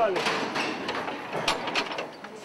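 Mechanical clicking and clatter in a lift car, with two sharp clicks about a second and a half in, under people's voices that fade out in the first half.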